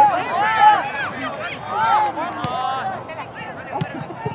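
Indistinct shouting voices of players and spectators carrying across an outdoor soccer field, with one sharp knock near the end.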